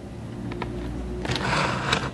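Small clicks and a scraping rub as a charging cable is fitted to a portable battery-powered music speaker and the unit is handled, over a low steady hum.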